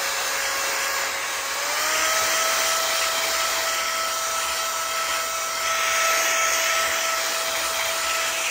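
Cordless electric air duster (a handheld mini blower) running with a brush attachment: a steady rush of air over a steady motor whine that rises slightly in pitch about a second and a half in.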